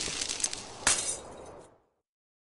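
Glass-shattering sound effect: a crashing rush of breaking glass with one sharp crack about a second in, then the clinking fades out.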